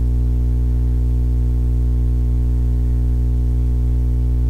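Loud, steady electrical mains hum: a low buzz with a stack of higher overtones that does not change.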